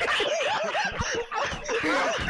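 A man laughing hard, a rapid run of short, high 'ha' bursts at about four a second.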